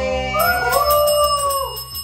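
A woman's long drawn-out voice gliding up and down, over background music with a quick ticking beat of about six ticks a second.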